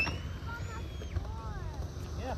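Skateboard wheels rolling over concrete in a steady low rumble, with faint voices above it.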